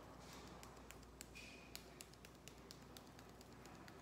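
Faint, irregular light ticks of chili salt being shaken from a small bottle onto ice in a glass and onto the table, against near-silent room tone.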